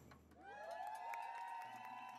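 A crowd cheering after the drumming stops: several high voices rise together into held yells, faint, with a few light clicks.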